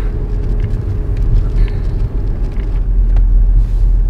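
Steady low rumble of a moving car heard from inside the cabin: engine and road noise while driving.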